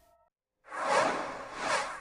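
A noisy whoosh sound effect that starts suddenly after half a second of silence, peaks about a second in, then fades.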